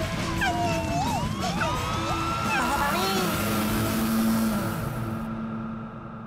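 Cartoon soundtrack: background music mixed with gliding, squeaky sound effects and voices, over a hiss that stops about five seconds in.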